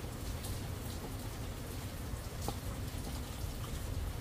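Steady rain falling, an even hiss in the background.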